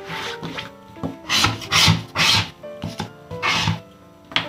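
Several short rubbing swishes of paper scratch-off lottery tickets sliding against each other and across the table as one ticket is moved aside and the next brought into place. Light background music plays underneath.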